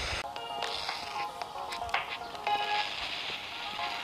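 Music playing through a small hand-held portable radio's speaker, picked up over the air from a home-built FM transmitter, with a hiss behind it. The notes come in about a third of a second in.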